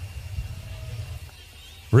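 Low, steady background rumble of an outdoor drag strip that thins out about one and a half seconds in.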